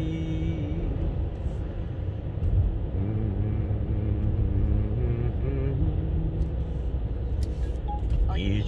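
Steady low rumble of a taxi's engine and tyres heard from inside the cabin while driving, with faint music in the background.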